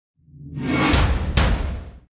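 Whoosh sound effect for an animated logo intro: it swells in over a deep rumble, with two sharp swishes about a second in, then fades away.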